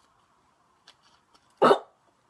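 Near quiet with a few faint ticks, then one short, sharp vocal burst about one and a half seconds in.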